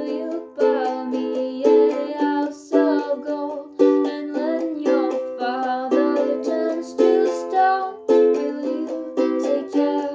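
Ukulele strumming chords in a steady rhythm, with an accented strum about once a second.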